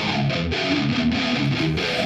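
Live heavy rock song at a quieter break: an electric guitar picks a riff of stepping notes with the bass dropped out.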